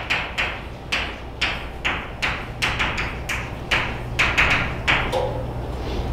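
Chalk writing on a blackboard: a quick, irregular run of taps and short scratches, about three a second, over a low steady room hum.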